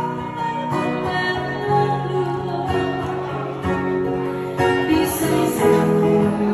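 A woman singing a slow Vietnamese song into a microphone, accompanied by acoustic guitar.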